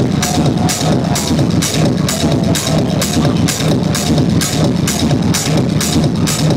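Loud techno played over a club sound system, a steady driving beat at about two beats a second with a heavy bass line.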